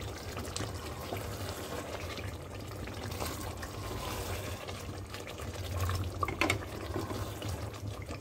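Egg and potato masala cooking in a steel pot, a steady liquid sizzle and simmer, with a few short scrapes and knocks of a silicone spatula stirring it.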